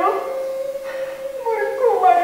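A woman's voice holding one long, wailing note, dropping in pitch near the end.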